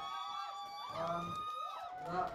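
A voice singing two long, held notes, the second starting about a second in and sliding off near the end.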